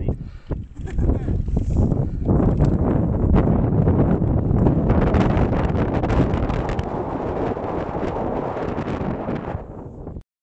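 Wind buffeting the phone's microphone, a heavy rumbling gust that swells about two seconds in and stays strong.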